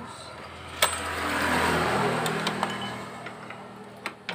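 A sharp metallic click about a second in, then a whirring rush that swells and fades over about two seconds with a few light clicks, as the exposed CVT parts of a Honda Vario scooter around the kick-starter gear are turned by hand.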